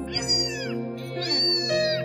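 A young tabby kitten meowing twice, high-pitched: a short call, then a longer, louder one that rises and falls. Soft background music plays underneath.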